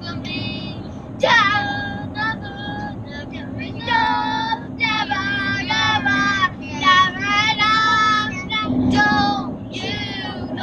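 Children singing a song in a vehicle cab, high voices rising and falling in melody, over a steady low engine and road hum.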